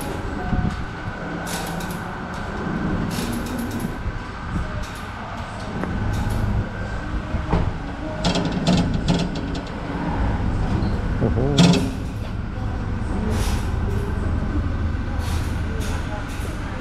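Auto service-bay ambience: a steady low hum and a faint high whine, with scattered metal clinks and knocks from hand tools working under a lifted pickup. The loudest knock comes near the two-thirds mark.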